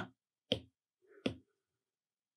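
Two sharp taps on an iPad's glass screen, about three-quarters of a second apart.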